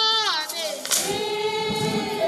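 Young women singing a traditional Zulu song together: a falling phrase, then a long held note.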